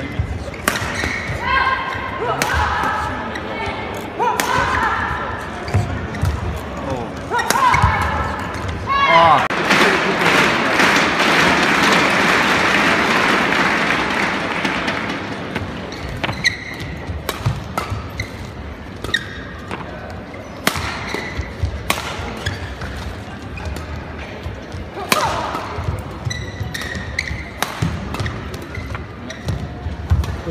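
Badminton rackets striking a shuttlecock in a fast doubles rally: sharp hits at irregular intervals. In the middle the crowd noise swells loudly for several seconds, then fades as the hits go on.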